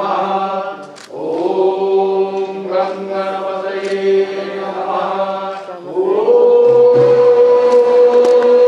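Several voices chanting Sanskrit in unison, drawing the syllables out into long held notes. About six seconds in, the chant steps up to a higher, louder held note.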